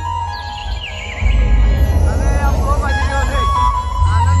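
Loud music from a dhumal band's truck-mounted loudspeaker stack, with heavy bass and a steady high melody. The bass drops out briefly and comes back hard about a second in, and voices sound over the music.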